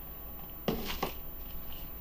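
A rigid cardboard product box being handled as its lid is lifted off: two short, soft scuffs of card close together, over a low steady room hum.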